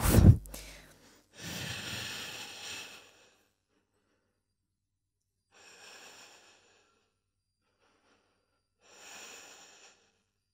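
A woman's audible breaths as she presses up into a yoga headstand. A longer breath comes about a second in, followed by two fainter ones around six seconds and near the end.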